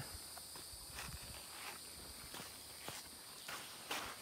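Faint footsteps on a gravelly creek bank: irregular steps with small crunches and knocks of stones.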